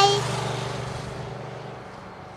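Cartoon car sound effect driving away: a low, pulsing engine note and a rushing noise that fade steadily as the car leaves.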